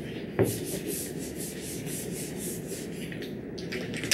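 A felt whiteboard eraser wiping back and forth across a whiteboard in quick strokes, about four a second, with a single knock about half a second in.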